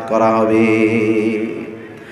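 A man's voice drawing out one word into a long, level chanted tone through a microphone, fading away after about a second and a half.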